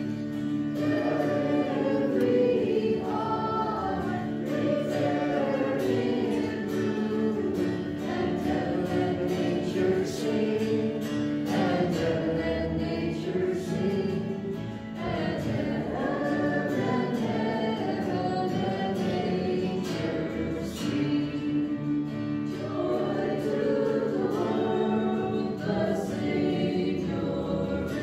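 Choir singing the entrance hymn of a Catholic Mass.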